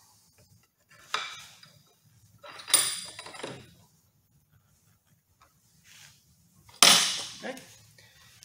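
Spokeshave taking cutting strokes along the corner of a piece of oak: three scraping strokes a couple of seconds apart, the last the loudest, near the end.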